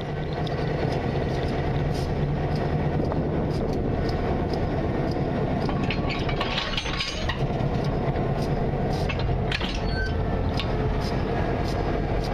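Steady diesel locomotive engine rumble, swelling over the first second, with scattered light metallic clinks throughout.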